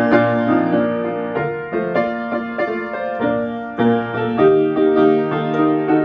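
Upright piano played solo: a piece in full chords, with new notes struck several times a second.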